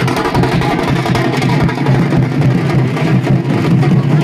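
Large stick-beaten drums played hard in a fast, dense beat, loud and without a break.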